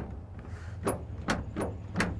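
A few light, sharp knocks of a 2002 Toyota Tundra's tailgate as it is pushed shut against new rubber bump stops. The tailgate will not latch fully with these bump stops fitted.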